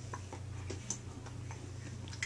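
Quiet room with a steady low hum and a few faint, scattered ticks.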